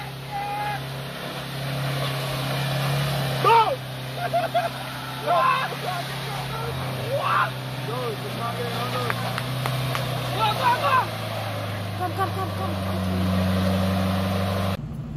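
Toyota Hilux pickup's engine running at low revs as the truck crawls through deep mud, a steady low drone that changes note near the end. Onlookers' voices call out over it now and then.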